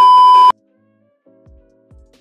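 TV test-card tone: a loud, steady, high beep over crackling static that cuts off suddenly about half a second in. Soft music begins about a second later.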